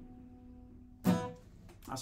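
Acoustic guitars letting the last chord of a song ring out and fade, then a short, sharp strum about a second in that dies away quickly. A man's voice begins right at the end.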